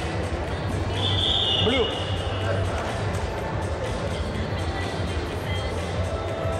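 Indoor wrestling arena ambience: background music and crowd chatter over a steady low hum, with one high, steady tone lasting about a second, starting about a second in.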